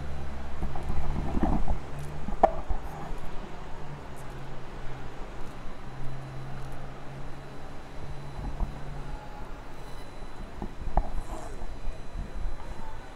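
City street traffic noise: a steady low engine hum that comes and goes, with a few sharp knocks.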